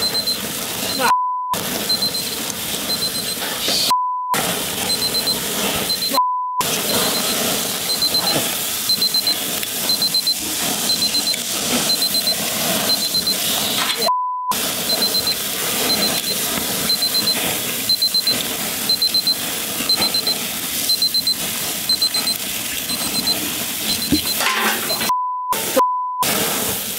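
A digital grill thermometer's alarm beeping in quick groups of high beeps, about one group a second, while its probe cable burns in a grill flare-up; the flames sizzle steadily underneath. Several times a steady censor-bleep tone cuts in over muted words.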